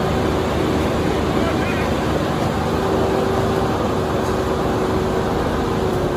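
A heavy vehicle's engine running steadily under load as an overturned box truck is pulled back upright, with onlookers' voices mixed in.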